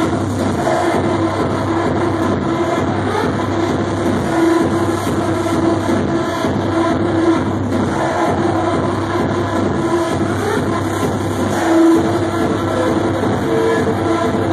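Loud electronic dance music from a club's sound system during a DJ set, with sustained synth tones held over a dense, continuous mix.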